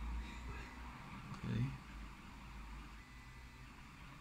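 Faint room noise: a low hum that fades after the first two seconds under a steady soft hiss, with one short spoken word about a second and a half in.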